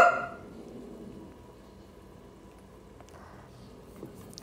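A brief vocal sound right at the start, then quiet room tone with a faint rustle a little after three seconds in.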